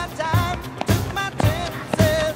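Background music with a steady beat, just under two beats a second, and a wavering melodic line over it.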